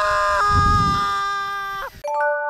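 A man's long, held yell of excitement while riding a zipline: one high, steady note that falls away just before the end. A brief low rumble sounds under it in the first second.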